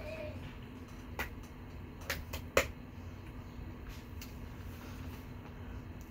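Quiet room tone with a steady low hum, broken by four short, sharp clicks between about one and three seconds in, the last one the loudest.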